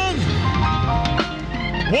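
Keyboard music holding sustained chords over a deep bass note, played under the sermon. A man's drawn-out shout trails off just after the start, and another rises near the end.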